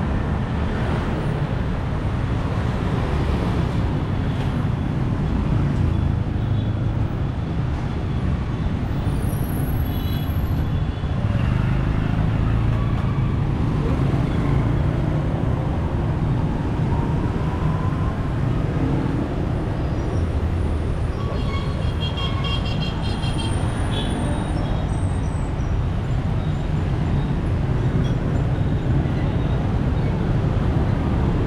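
Steady city street traffic, mostly motorbikes and cars running past, a continuous low rumble. A brief run of high-pitched beeping sounds about three-quarters of the way through.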